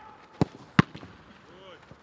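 Two sharp thuds of a football being struck, less than half a second apart, as shots and touches are played in a goalkeeping drill.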